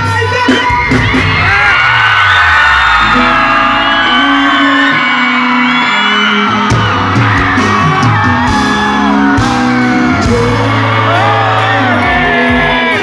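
Loud live band music with sustained low notes, with many voices from the crowd whooping, shouting and singing over it.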